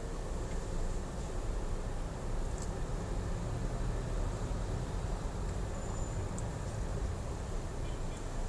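Steady low rumble of a car's engine and tyres heard from inside the cabin as it moves slowly in city traffic.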